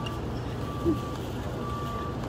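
Reversing alarm beeping a single steady tone about once a second, over a steady low traffic rumble.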